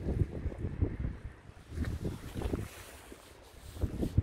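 Wind buffeting the microphone in uneven gusts: a low rumble that eases off after about halfway and swells again near the end.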